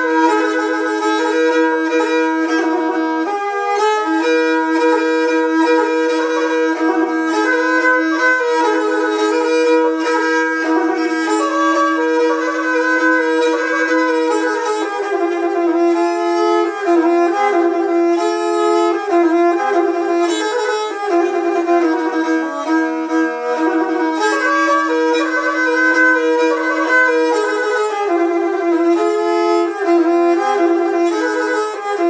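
Pontic lyra bowed solo: a flowing melody played over a steady drone note held beneath it.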